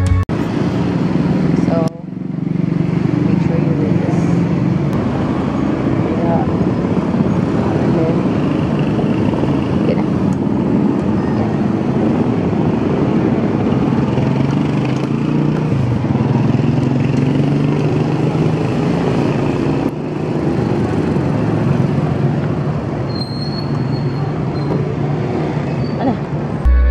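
Street traffic: vehicle engines running and passing, with people talking in the background.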